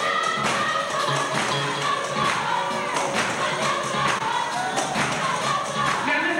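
Gospel choir singing live, with a steady beat behind the voices.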